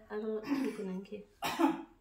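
A person talking, then a single cough about one and a half seconds in.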